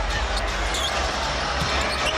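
Steady arena crowd noise during live basketball play, with a basketball being dribbled on the hardwood court and a brief high sneaker squeak a little under a second in.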